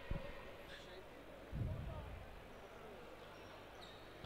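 Quiet basketball arena background with faint voices. A dull low thump sounds about one and a half seconds in.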